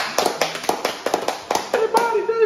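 Three people clapping their hands, a quick, irregular patter of claps.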